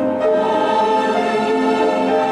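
Christmas music: a choir singing long held notes over an instrumental backing.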